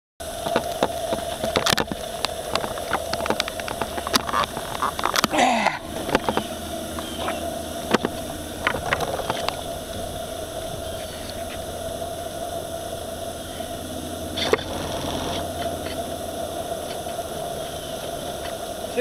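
Live steam model boat running on the water, heard from a camera mounted on its cab: a steady mechanical hum with a constant high tone over a wash of noise. Many sharp clicks and knocks sound through the first half, with a single one later on.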